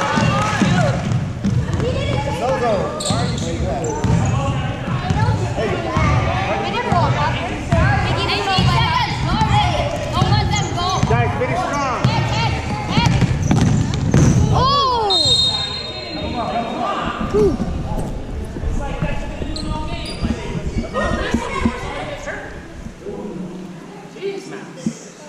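Basketball being dribbled and bouncing on a gym's hardwood court, with voices calling out across the hall. A short high whistle sounds a little past the middle, and the action quietens after it.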